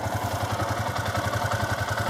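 Yamaha Sniper 150's liquid-cooled 150cc single-cylinder four-stroke engine idling steadily, a low even pulse of about a dozen beats a second.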